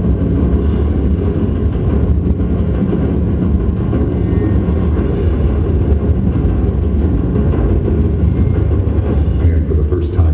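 The soundtrack of a Marvel Blu-ray and DVD advertisement played loud through a room's speakers: a heavy, steady bass rumble with a voice in it.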